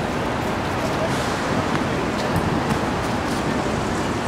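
Steady outdoor noise with indistinct voices mixed in, and no single distinct event standing out.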